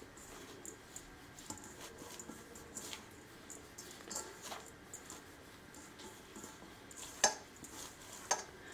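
Hands rubbing a dry rice-flour and gram-flour mix through with oil in a steel bowl: faint rustling with scattered soft taps, and one sharper tap a little after seven seconds in.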